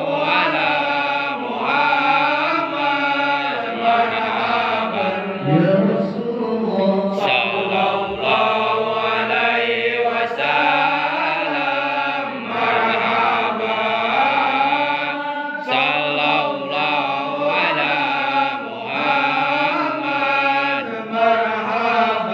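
A group of men chanting marhaban, Arabic devotional verses in praise of the Prophet, in a continuous melodic line through a microphone, with no instruments.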